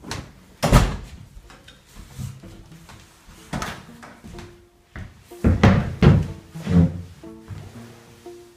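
A loud knock about a second in, then several more knocks and thumps of people moving about and a chair being sat on. About halfway through, light plucked-string background music begins.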